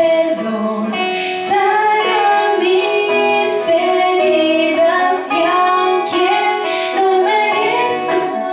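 A woman singing a slow worship song into a microphone, accompanied by acoustic guitar.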